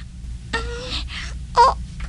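A person's short whimpering, moaning vocal sounds in a radio drama: one breathy moan about half a second in and a second, shorter one near the end.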